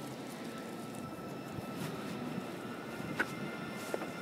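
A bicycle rolling along an asphalt road: a steady rush of tyre and wind noise, with a couple of small sharp clicks near the end.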